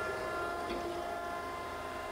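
Okamoto ACC-1224-DX hydraulic surface grinder running: a steady hum with faint, high, steady whine tones from the turning wheel spindle and the hydraulic table and cross-feed traversing.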